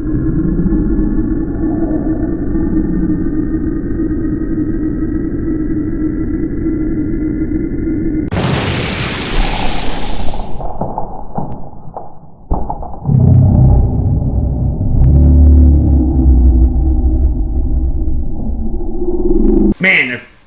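Dramatic sound-effect track: a steady low drone with faint slowly rising tones, a loud hiss that cuts in about eight seconds in and stops sharply two seconds later, then a deep rumble that takes over for the second half.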